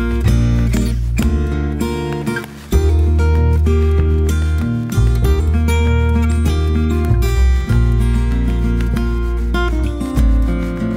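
Background music: a strummed acoustic guitar track with a steady bass line, dipping briefly about two and a half seconds in.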